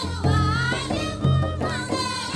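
Adivasi Karam folk song: a woman singing a wavering melody into a microphone over a deep beat that comes about every second and a quarter.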